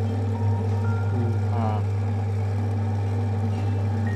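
Electric motor of a lapidary polishing machine running with a steady low hum while an opal is held against its felt wheel charged with cerium oxide.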